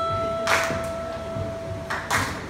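Live rock band in a quiet passage: one sustained note is held while two cymbal hits ring out, about half a second in and near the end.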